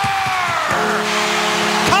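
Arena goal horn blowing after a home-team goal, a steady low chord that starts under a second in and holds, over a cheering crowd.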